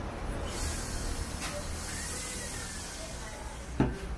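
Steady background hiss with a low rumble, and a short click near the end.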